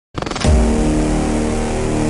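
Intro sound for a production-company title: a fast pulsing build that breaks into a loud deep hit near half a second in, followed by a long held tone.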